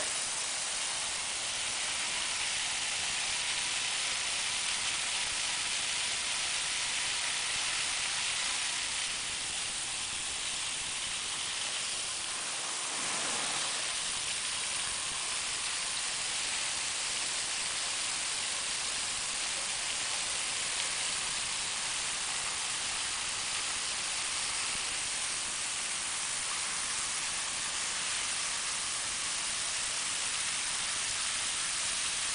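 Brass hose spray nozzle with a pressure gauge hissing steadily as it sprays a jet of water at about 30 PSI.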